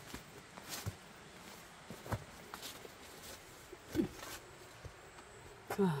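Footsteps of a person walking along a path: a handful of separate, fairly quiet steps. A brief falling voice sound comes about four seconds in.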